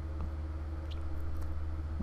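Quiet room tone: a steady low hum, with a couple of faint clicks.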